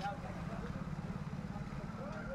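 Street ambience: an engine running steadily at idle, with a fast, even pulse, and indistinct voices in the background.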